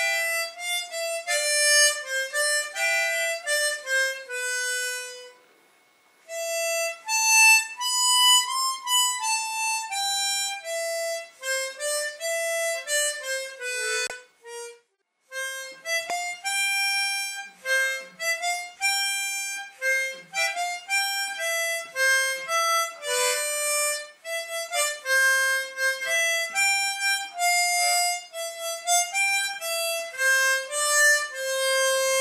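Harmonica played solo: a melody of single held notes moving up and down, with two short breaks between phrases, about six seconds in and about halfway through.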